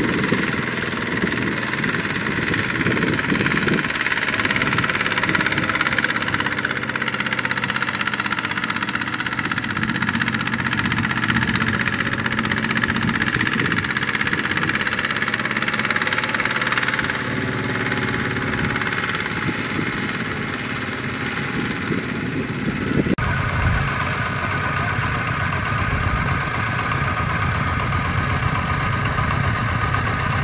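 Kubota ZT120 single-cylinder diesel engine of a two-wheel walking tractor running under load as it pulls a loaded trailer. About three-quarters of the way through the sound changes abruptly to a different engine running.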